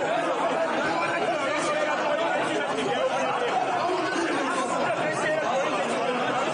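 Many voices talking over one another in a large hall: a crowd of lawmakers packed together in a parliament chamber, no one voice standing out, at a steady level.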